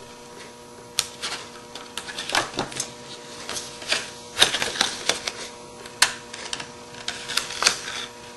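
Paper being folded and pressed into shape by hand on a work surface: irregular crisp crackles, taps and a few sharper clicks, the loudest about halfway through and about six seconds in, over a faint steady hum.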